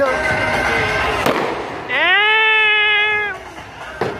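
Aerial fireworks: a single sharp bang about a second in, then a loud, high tone that sweeps up quickly and holds for about a second and a half before it stops.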